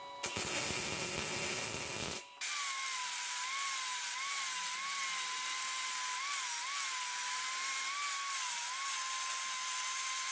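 Angle grinder with a polishing disc buffing a steel knife blade: a steady motor whine whose pitch dips briefly several times as the pad is pressed onto the blade. It is preceded by about two seconds of a rougher, harsher noise that stops abruptly.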